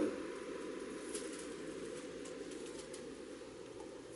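Bible pages being turned by hand on a lectern: a few faint, short papery rustles over a steady low room hum.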